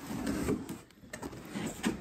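Cardboard box lid scraping and sliding as it is pulled open, with a louder scrape about half a second in and another near the end.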